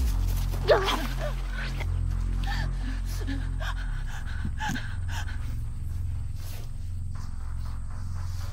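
Low, droning horror-film score, with a sharp gasp a little under a second in and more short breathy vocal sounds over the music later on.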